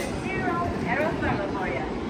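Indistinct voices of people talking, over a steady low rumble.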